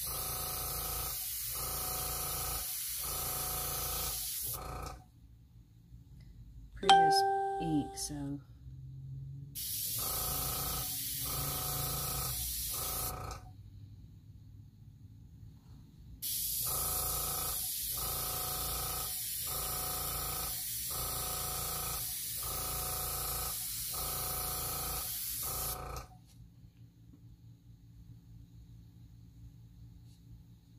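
Airbrush blowing air in three bursts of hiss, a short one, another short one and a long one, each with a hum underneath that breaks off about once a second. Between the first two bursts comes a brief ringing tone, the loudest sound of all.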